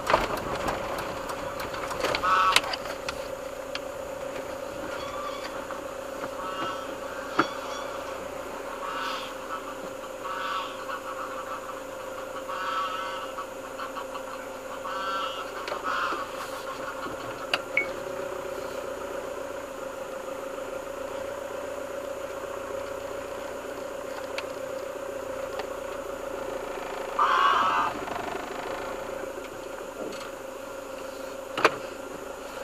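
Short pitched animal calls coming every few seconds, one louder burst near the end, over the steady hum of the van's engine.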